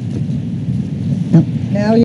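Indistinct murmur of several people talking at once, heard as a muffled low rumble, with one voice coming up clearly near the end.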